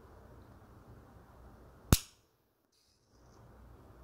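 Cosentyx Sensoready autoinjector pen giving one sharp click about two seconds in, the pop that marks the dose as nearly delivered, after which the pen is held another ten seconds.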